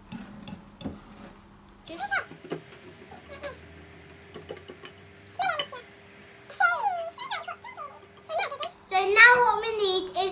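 Wire whisks clicking against glass mixing bowls in the first second, then a young child's high-pitched wordless vocal sounds, a few short calls, with a child's voice growing louder near the end.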